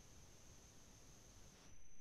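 Near silence: faint background hiss from a video-call audio feed, with a thin steady high tone.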